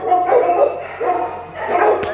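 A dog whining and yowling, about three drawn-out cries in a row, as it 'talks' for attention.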